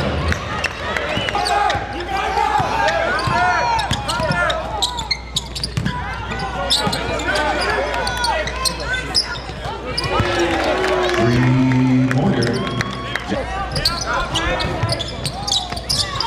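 Live basketball game in a gym: sneakers squeaking on the hardwood court, the ball bouncing, and players and spectators calling out, with a short shout about two-thirds of the way through.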